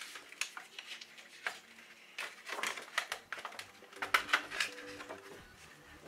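A thin paper insulating sheet being handled and lifted off the tops of UPS batteries: crinkling rustles mixed with scattered clicks and taps.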